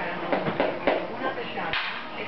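Small toy cars clicking and clattering against each other and a plastic bin as they are handled, in a run of short, irregular knocks.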